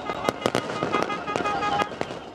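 Fireworks going off in rapid succession, many sharp bangs close together.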